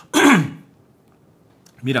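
A man clears his throat once, a short, loud rasp falling in pitch.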